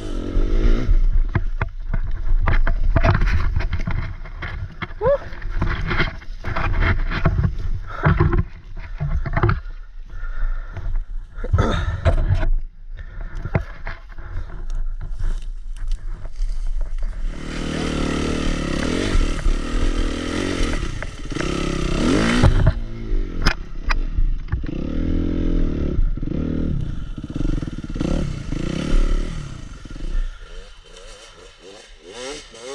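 Suzuki RM-Z250 single-cylinder four-stroke dirt bike engine heard from on the bike. In the first half it runs and revs unevenly as branches scrape and clatter against the bike. From just past halfway it holds a steady rev, then rises and falls in pitch over and over until near the end.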